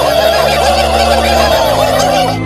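A massed flock of cartoon turkeys gobbling all at once, a dense chorus of many overlapping gobbles.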